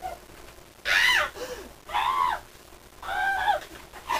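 A person making three high-pitched wordless cries, each rising then falling in pitch, about a second apart.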